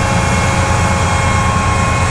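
Engine of a self-propelled sweet corn cob wagon running as it pulls away: a steady low rumble with a steady high whine over it.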